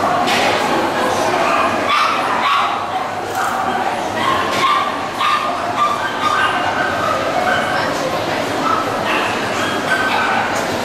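A dog barking over and over in short, high calls, about one or two a second.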